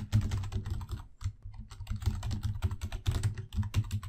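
Fast typing on a computer keyboard: a dense run of keystrokes, with a short break about a second in.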